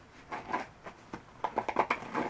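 Fingers scratching and rubbing the bumpy cardboard texture on a children's touch-and-feel board-book page, with a quick run of scratches in the last half second.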